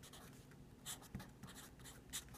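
Felt-tip marker writing on paper: a few faint, short strokes, the clearest about one second in.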